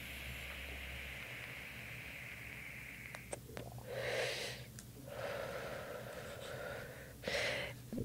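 A long drag on a PLUGplay cannabis vape pen: a faint, steady inhaling hiss for about three seconds, then several breathy exhales as the vapour is blown out.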